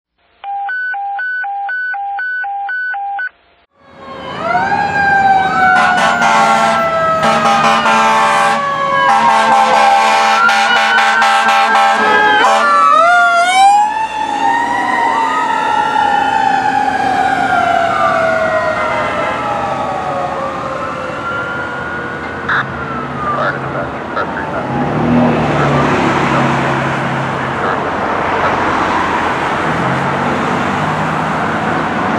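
Fire engine responding with a Q mechanical siren wailing and air horns blasting again and again. The siren's pitch rises and falls in long glides, with a quick rapid stretch about 12 to 14 seconds in. Then the wail winds down and fades into road traffic.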